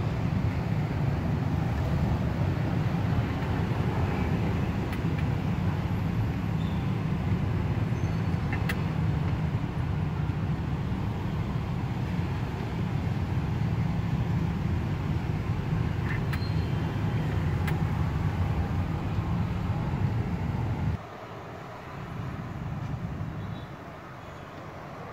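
Steady low rumble of street traffic, with a few faint clicks; it drops away suddenly about three seconds before the end.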